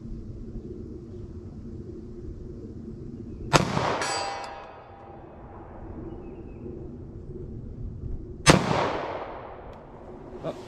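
Two pistol shots from a Glock 41 firing .45 ACP +P ammunition, about five seconds apart. The first is followed by the ringing clang of a steel target being hit. The second draws no ring: a miss.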